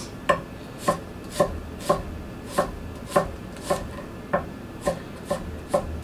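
Gyuto knife rough-chopping an onion on an end-grain larch wood cutting board: a steady run of about eleven sharp knife strikes on the wood, roughly two a second.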